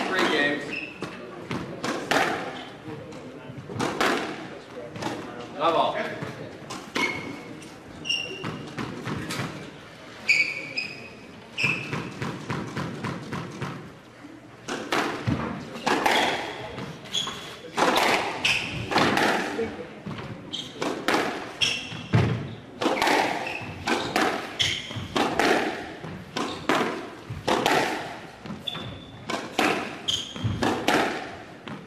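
Squash ball struck back and forth with rackets and smacking off the court walls in a rally, a sharp crack every second or so. Short high squeaks of court shoes on the hardwood floor come between the hits.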